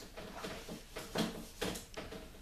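A hand rubbing marker ink off a whiteboard in a few short scrubbing strokes. The ink doesn't erase well.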